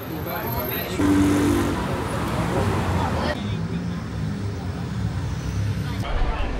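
Street traffic noise, with vehicle engines running and people talking.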